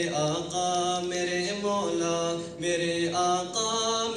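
A man singing a nasheed into a microphone, holding long, drawn-out notes that step from pitch to pitch.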